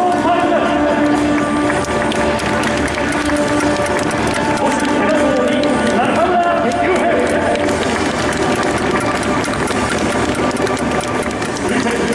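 Stadium public-address announcer calling out players' names over music, echoing around the ballpark, with crowd noise underneath.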